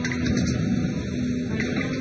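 Steady machine rumble with a low hum from a refuse crane and its grab over the waste bunker of an incineration plant.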